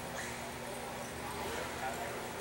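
Indoor arena ambience: background voices of people chattering over a steady low hum.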